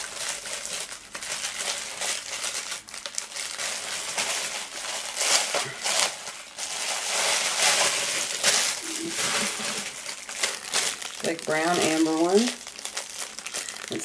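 Clear plastic packaging bags crinkling and rustling as a four-pack of bead necklaces is handled and opened, in a dense, irregular crackle that keeps going throughout.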